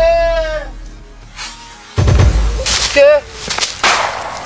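A person's voice crying out in one drawn-out, wavering call, then several short bursts of noise and a brief vocal exclamation in the second half.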